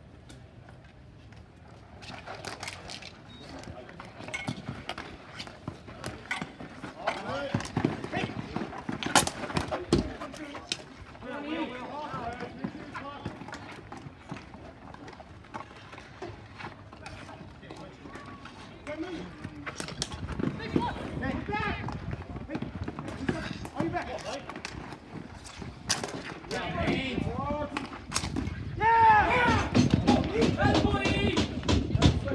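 Ball hockey game play on a plastic-tile court: sharp clacks of sticks and ball and quick footfalls on the tiles. Players and bench shout, loudest near the end.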